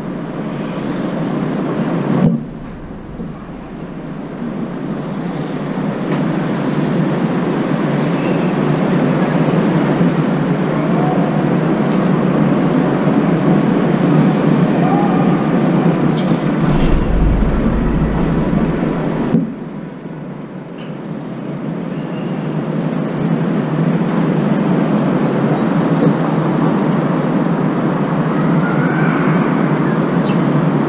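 Loud, steady rushing noise that drops off suddenly twice and builds back up over several seconds each time.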